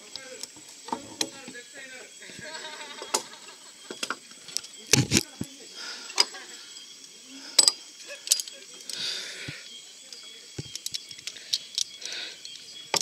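Climbing-harness carabiners and clips clinking and knocking against the safety rope, cable and wooden log rungs of a ropes-course obstacle: a scattered series of sharp clicks and knocks, the loudest about five seconds in.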